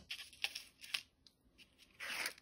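Paper jewelry cards being handled and flipped on a stone countertop: a few short, soft rustles and scrapes, most of them in the first second.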